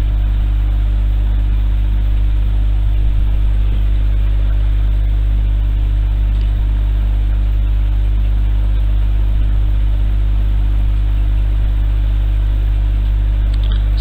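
A loud, steady low hum with no other events.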